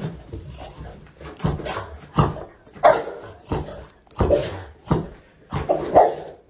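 A puppy giving short, repeated barks at a steady pace, about one every 0.7 seconds, while playing with a ball.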